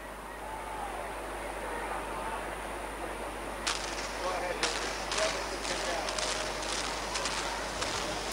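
Soundtrack of amateur camcorder footage of World Trade Center Building 7, played over the hall's loudspeakers. Under a steady hiss, faint distant voices are heard, then from about four seconds in comes a string of sharp, irregularly spaced cracks or bangs, which the lecturer takes as proof that the building was blown up.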